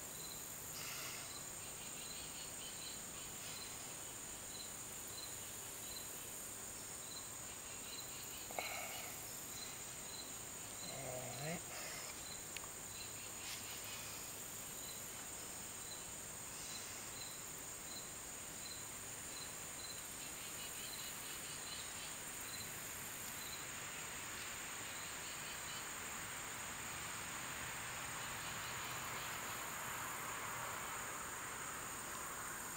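Insects chirping outdoors: a short, regular chirp about twice a second over a steady high-pitched buzz, with the chirping stopping about three-quarters of the way through. Two faint brief sounds come about 8 and 11 seconds in.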